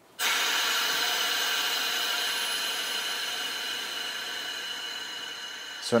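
A steady hissing noise with faint fixed tones in it. It starts suddenly just after the beginning and slowly fades until speech comes back near the end.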